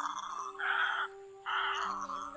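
Egrets calling: three short, harsh calls about half a second each, one after another, over faint steady music tones.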